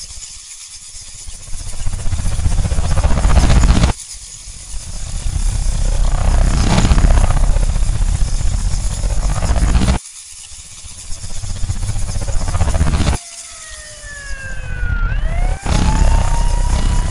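Edited sound-effect track: a loud rumbling roar swells over a few seconds and cuts off abruptly, three times over. Near the end a siren starts to wail, its pitch sliding down and then up.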